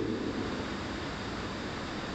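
Steady hiss of room tone and microphone noise, with no distinct sound.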